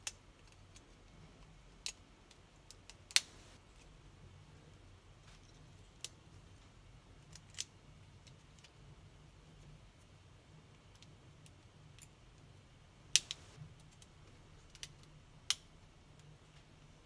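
A Samsung C3510 Genoa phone's plastic housing being worked open with a small screwdriver: scattered sharp small clicks and snaps of plastic and metal, the loudest about three seconds in and again about thirteen seconds in, over a faint low hum.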